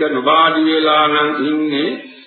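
A Buddhist monk's voice chanting in a slow, intoned recitation, holding long notes that glide gently in pitch; it trails off just before the end.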